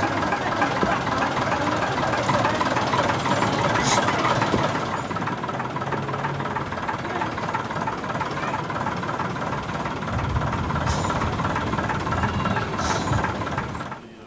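Diesel engine of an AEC single-deck bus running steadily, with a few brief clicks.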